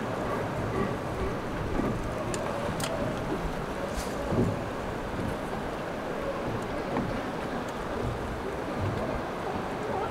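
Steady wind and water noise on the open sea, with a few faint clicks.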